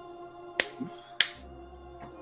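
Two sharp hand claps about half a second apart, over quiet background music with sustained notes.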